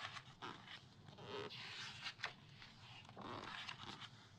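Pages of a glossy magazine being turned and handled: a run of soft paper swishes and rustles, punctuated by a few sharp flicks as the pages fall and are smoothed flat.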